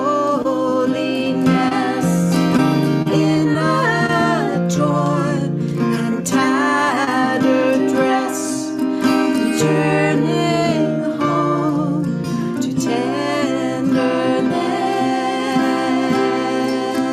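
A live acoustic song: a woman sings the lead vocal with a second woman's voice in harmony, over two acoustic guitars.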